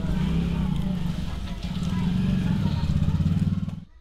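A small engine or motor running steadily: a loud, low, rapidly pulsing hum that cuts off suddenly near the end.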